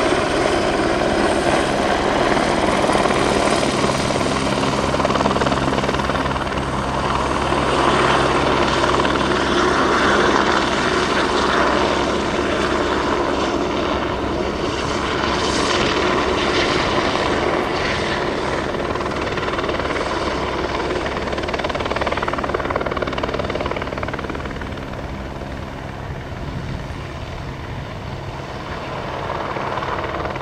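Helicopter in flight: steady rotor and turbine noise that eases a little late on and builds again near the end.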